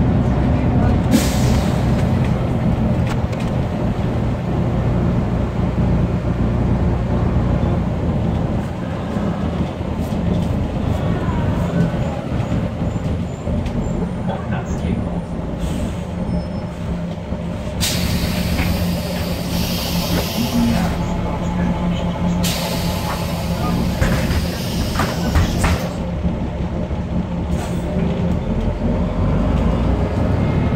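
Volvo 7000A city bus heard from inside the passenger cabin: its Volvo D7C275 six-cylinder diesel engine and ZF 5HP592 automatic gearbox running steadily. About a second in there is a short hiss of compressed air, and from a little past halfway two longer, loud pneumatic hisses follow a few seconds apart.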